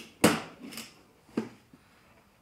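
A ratchet tie-down strap being released after holding a snowmobile's front bumper in line: a sharp clack just after the start, the loudest sound, a fainter one, then another sharp clack about a second after the first.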